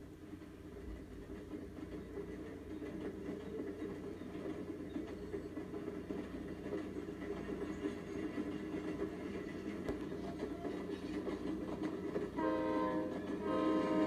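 Soundtrack played through a TV's speakers and picked up in the room: a low, sustained swell that grows steadily louder, then a held chord of several tones about twelve and a half seconds in.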